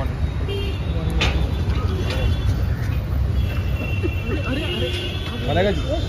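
Steady low rumble of street traffic, with a sharp click about a second in and people's voices calling out in the second half.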